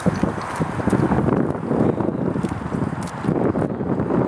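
Wind and handling noise on a handheld camera's microphone outdoors, an irregular low rumbling in uneven pulses.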